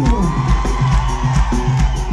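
Live band playing Mauritian sega music with a steady driving beat; a voice or instrument slides down in pitch at the start, then holds a note. The audience cheers and whoops along.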